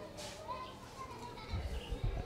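Faint distant voices in the background, with high chirps like small birds. A few low thumps come near the end.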